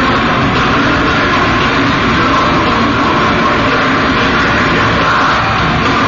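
Nu-metal band playing live at full volume: distorted electric guitars and drums as a dense, unbroken wall of sound.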